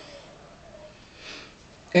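A person's short, soft sniff about a second and a quarter in, during a pause between words.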